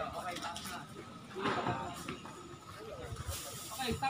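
Faint, distant voices over a steady background hiss, with no clear distinct sound of its own.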